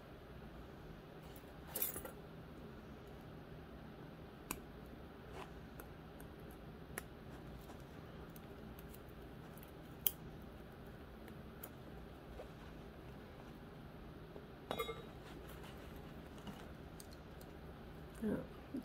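Faint, scattered clicks and ticks of craft wire and glass crystal beads being handled against a metal hoop, a few seconds apart, over low room tone; the sharpest click comes about ten seconds in.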